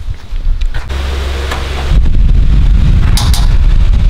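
Electric fan running: a steady low hum that turns into a louder low rumble about two seconds in. A couple of brief clicks near the end.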